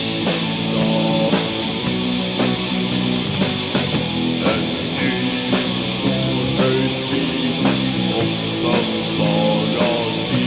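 Raw, lo-fi folk black metal demo recording: distorted electric guitars play a riff over drums, with a hit about once a second.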